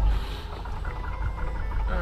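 Piper Saratoga's six-cylinder piston engine running just after starting, a steady low rumble heard from inside the cockpit.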